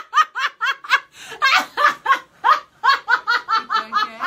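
Hearty laughter, a fast run of short 'ha' pulses, about five a second.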